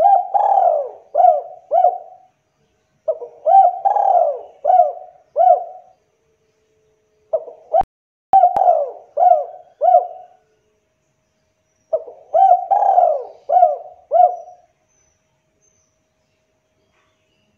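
Spotted dove (tekukur) cooing in four phrases a few seconds apart, each a run of short, arched coos. A couple of sharp clicks come about eight seconds in.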